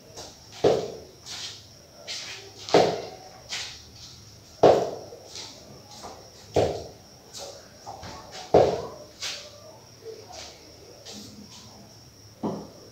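Bare forearms and shins striking a rope-wrapped wooden post in kung fu conditioning training: a series of thuds, a heavy one about every two seconds with lighter strikes between.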